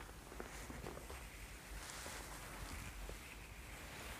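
Faint rustling and soft rubbing of hands massaging a person's neck and shoulders, with a few soft ticks early on and a slightly louder patch of rustle about two seconds in.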